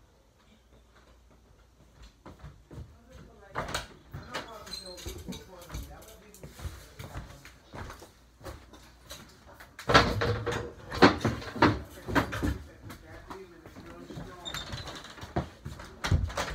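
Knocks and thumps of a person moving about close to the microphone, with indistinct voices. It starts nearly silent, and the heaviest thumps come about ten to twelve seconds in.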